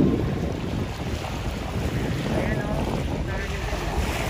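Wind buffeting the microphone in a steady low rumble, over small waves lapping on open water.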